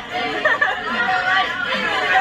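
Several voices talking over one another in a jumble of chatter, with no single clear speaker.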